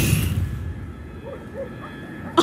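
The fading tail of an electrical blast: a low rumble and the hiss of showering sparks die away over the first half-second or so. A quieter low rumble is left, with a few faint short sounds.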